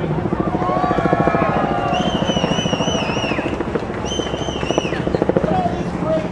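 Voices and crowd noise from a rally, deliberately distorted with a fast, even chopping pulse so the words can't be made out. Two wavering high tones come in about two and four seconds in.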